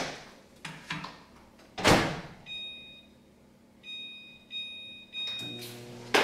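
Over-the-range microwave oven: the door clunks open and then shuts with a thump about two seconds in, followed by a series of short two-tone keypad beeps as the time is set. Near the end the oven starts running with a low steady hum.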